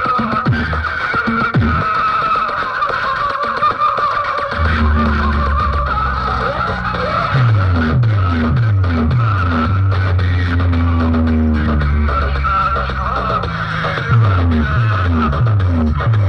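Loud DJ music blasting from a stack of horn loudspeakers, heavy on the bass. The bass drops out for a couple of seconds and comes back hard about four and a half seconds in, with repeated falling bass sweeps.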